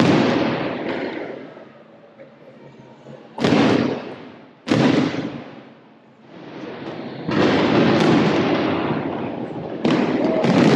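Fireworks display bursting overhead: a loud boom at the start fading away, then more sudden booms about three and a half, five and seven seconds in, each dying away over a second or two, and another near the end.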